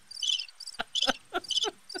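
Cricket chirping sound effect, a cluster of high chirps about twice a second, the classic gag for a joke falling flat to awkward silence. A few short laughs come between the chirps.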